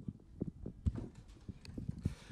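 Irregular soft low knocks and thumps, handling noise from a handheld microphone being held and moved.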